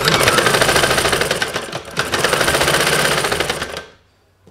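Sewing machine running fast, stitching a chudithar sleeve seam, with a brief dip about halfway through. It starts suddenly and stops just before the end.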